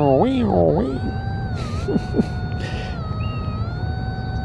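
Teknetics T2 Classic metal detector in pinpoint mode giving a steady electronic tone from about a second in, its pitch dipping slightly twice and rising again as the coil moves over a coin-sized target about three inches deep.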